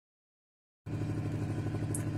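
2010 Ford Transit Connect's 1.8 L TDCi diesel engine idling steadily with an even, fast low pulse. It starts abruptly just under a second in, after silence.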